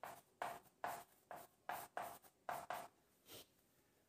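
Chalk writing a word on a blackboard: a run of short scratchy strokes that stops about three seconds in.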